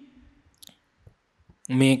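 A man's voice into a close microphone trails off, leaving a short pause with a few faint clicks, and his speech resumes near the end.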